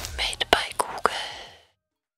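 A short breathy, whisper-like hiss followed by four sharp clicks, the sound fading out about a second and a half in.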